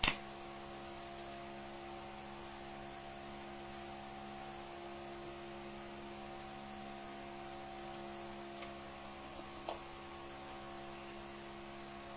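Steady electrical hum with several evenly spaced overtones, like mains hum, unchanging throughout; a couple of faint clicks come about two-thirds of the way through.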